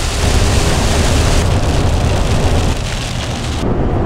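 Steady hiss of rain and wet-road spray against a moving van, over the low rumble of the engine and tyres. The hiss cuts off abruptly near the end, leaving the rumble.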